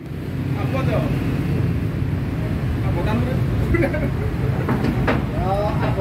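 An engine running steadily, a low rumble throughout, with voices talking in the background and a few light metallic clicks.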